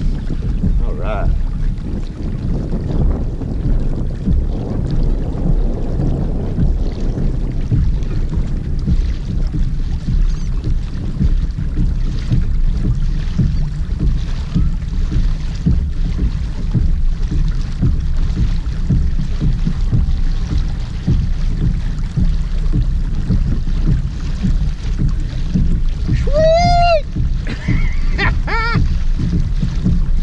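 Wind buffeting the camera microphone, with water washing along a moving kayak's hull. Near the end come two short pitched calls that rise and fall.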